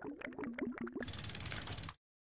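Sound effects of an animated outro title card: a run of pitched clicks, then a fast ratchet-like clicking for about a second that stops just before the end.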